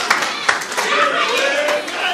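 Scattered hand claps and voices from a church congregation, with one sharper clap about half a second in.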